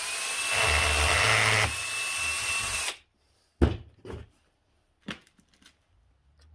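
Ryobi One+ 18 V cordless drill running for about three seconds as it bores a hole through a tennis ball, a steady motor whine that eases slightly partway through and then stops. A few sharp knocks follow as the drill and ball are handled on the table.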